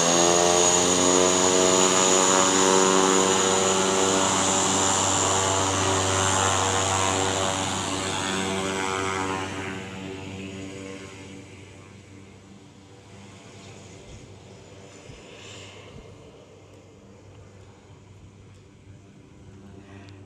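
A single-engine skydiving plane's propeller engine running loud, with a high steady whine over the drone, as the plane taxis away; the sound fades from about halfway through to a faint drone.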